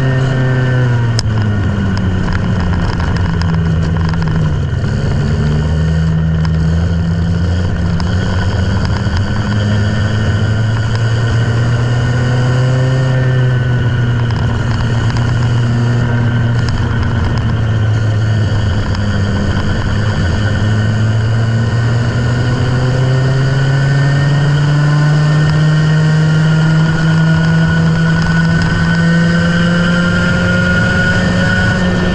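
Go-kart engine heard on board, running continuously under load: its pitch drops over the first few seconds as it slows for a corner, climbs again, sags through the middle, then rises steadily as it accelerates over the last third.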